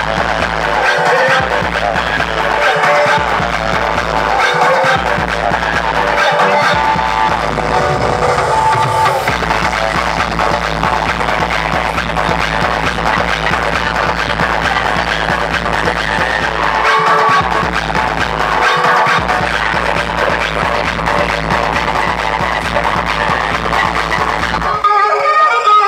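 Loud Indian wedding DJ dance music played through a stack of large loudspeaker cabinets, with a heavy, booming bass. The bass cuts out briefly a handful of times, near the start, around the middle and toward the end.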